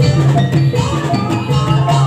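Live Javanese gamelan playing jathilan dance music: metal-keyed and gong-type percussion ringing a quick repeating pattern over drums.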